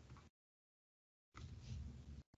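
Near silence: faint room noise that drops out completely for about a second in the middle, then returns.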